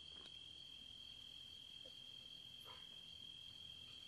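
Near silence: faint room tone with one steady, high-pitched tone running underneath.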